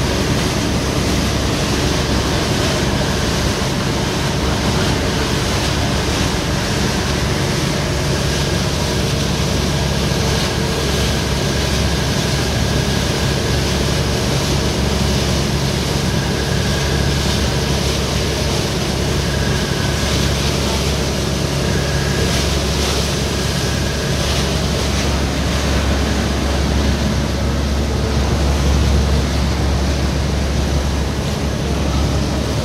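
Steady rush of wind and water heard from the deck of a small motor ferry under way, with the even drone of its engine underneath.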